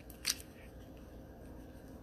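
One brief, sharp rustle about a quarter second in, from a necklace and its card number tag being handled, then quiet room tone.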